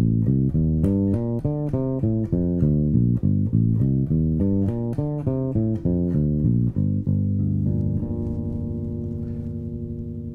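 Electric bass playing a quick run of single plucked notes, an arpeggio sequence up and down the G minor scale. Near the end it settles on one long note that rings out and fades.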